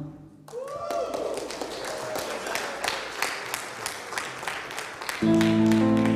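Scattered clapping and applause, with a voice briefly calling out near the start. About five seconds in, a keyboard comes in with sustained chords.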